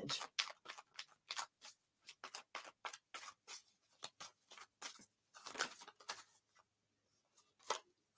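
Tarot cards being shuffled and drawn by hand: a quiet run of irregular card flicks and rustles, pausing briefly near the end.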